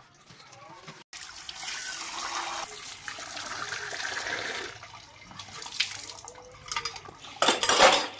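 Water from an outdoor tap running steadily onto dishes as they are rinsed by hand, then stopping; after it, steel and ceramic dishes clink as they are set down, with a loud clatter near the end.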